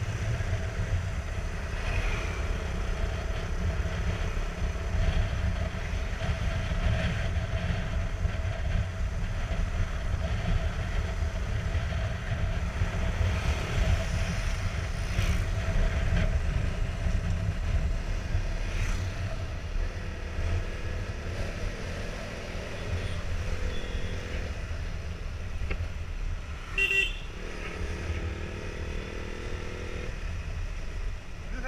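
Motorcycle riding along a road, its engine running steadily under heavy wind rumble on the camera microphone. A brief horn toot sounds near the end.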